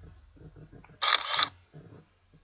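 Camera shutter click sound effect: one short, sharp double-click shutter sound about a second in, over a faint low background.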